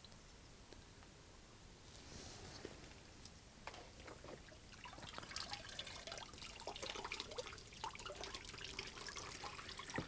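Faint bubbling and dripping of water from a potted tree's root ball soaking in water, sparse at first and busier from about halfway. The bubbles are air escaping from the soil as it soaks up water, the sign that the root ball is not yet fully soaked.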